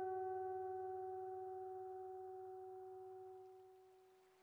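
A single ringing tone with several overtones, dying away steadily and nearly gone by about three seconds in, part of an acousmatic electroacoustic piece.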